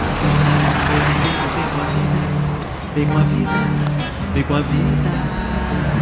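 Street traffic, with a car passing in the first second or so, under background music of sustained notes.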